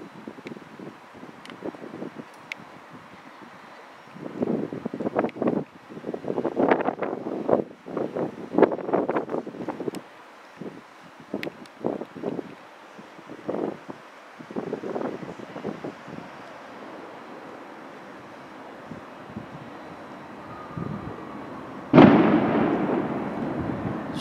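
Gusts of wind buffeting the camera's microphone in irregular rumbling bursts, with a few faint clicks, and a sudden loud thump near the end.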